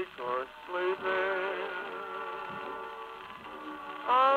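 A 1940s crooner-and-orchestra 78 rpm record playing on a Columbia Grafonola acoustic phonograph. This is a quieter passage of the song, with wavering notes early on and steady held notes through the second half.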